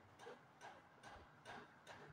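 Faint strokes of a marker pen writing on a whiteboard, short scratchy sounds a few times a second.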